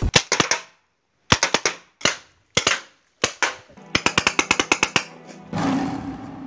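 Paintball marker firing in short strings of sharp pops, several quick shots at a time, then a faster run of about a dozen shots near the end. Music comes in just before the end.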